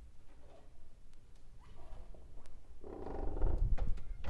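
Balcony door being opened: a few light clicks from the handle, then, from about three seconds in, a loud low rumble as the door swings open.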